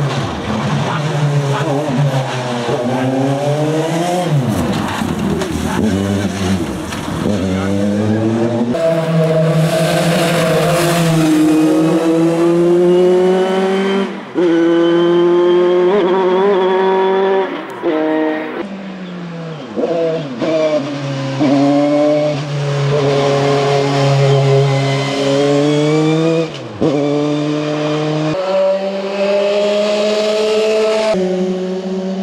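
Dallara F301 Formula 3 single-seater's two-litre engine at full race pace. The revs climb steeply through the gears, with a sharp drop in pitch at each upshift, and fall away on the overrun when the car slows, then it pulls hard again.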